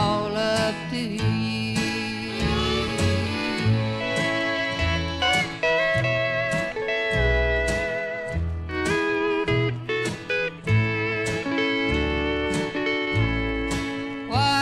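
Country band music with a steel guitar lead playing sliding, gliding notes over a steady bass and rhythm beat.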